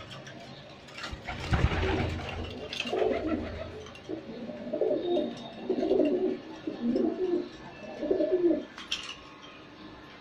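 Domestic pigeons cooing in a small loft: a run of about five low coos, roughly one a second, starting about three seconds in. Just before them comes a louder, rougher noise lasting about a second and a half.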